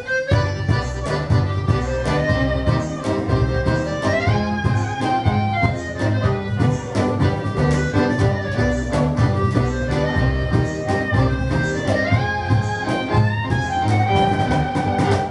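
Live acoustic folk band playing an upbeat instrumental intro: accordion, fiddle, guitar and double bass over a steady beat.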